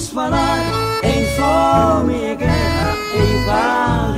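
Instrumental passage of a gospel song: an accordion plays the melody over a steady bass line.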